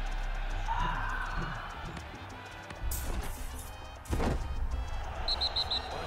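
Televised football match audio with music: two loud surges about three and four seconds in, and four short high pips near the end.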